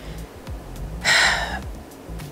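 A woman draws one short, audible breath, like a gasp, a little past the middle of a pause in her speech.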